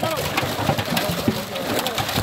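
Live fish flapping and splashing in a crowded net, a quick run of short wet slaps, with men's voices and a few short rising and falling calls among them.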